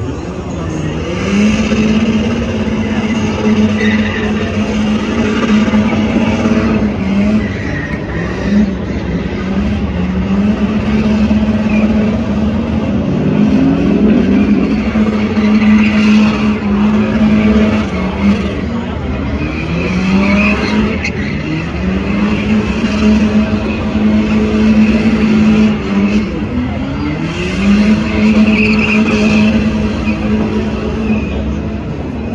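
Turbocharged Honda K24 four-cylinder in a 1997 Chevy 1500 pickup held at high revs during a burnout, with the noise of spinning, smoking tyres. The revs drop and climb back up again several times.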